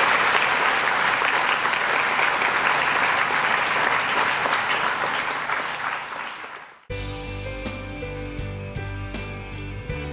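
An audience applauding, with the clapping dying away about six seconds in. Then music with a steady beat cuts in abruptly.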